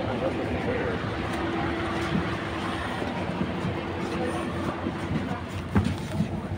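Mercedes-Benz Citaro C2 K city bus idling at a stop with its doors open, a steady engine drone while passengers board, with a sharp knock near the end.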